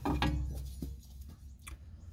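A metal bracket being handled and held up against a van's chassis, giving a few faint light clicks over a low rumble that fades after the first second.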